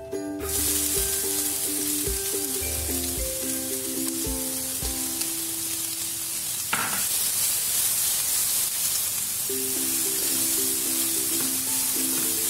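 Chopped onions sizzling as they drop into hot ghee in a kadai, the sizzle starting suddenly about half a second in and running on steadily while they are stirred with a spatula.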